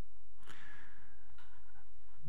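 A man's breath, a short sigh-like exhale close to a headset microphone, about half a second in, over a low steady room hum; a faint click follows about a second and a half in.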